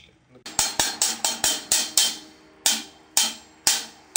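Drumstick strokes in a backsticking demonstration: the stick is flipped so that some hits land with its butt end. The strokes come as a quick run of about eight, then four slower strokes about half a second apart, each ringing briefly.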